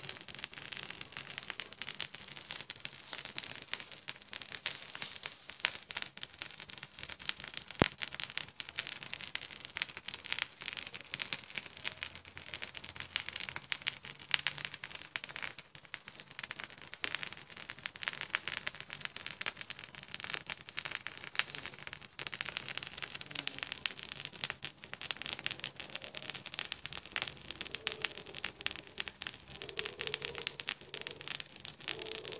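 Two small cotton-based fire starters burning, crackling steadily with many small pops over a hiss.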